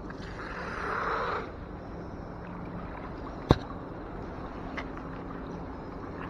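A fishing magnet pulled up out of canal water with a splash lasting about a second, then one sharp knock just past halfway.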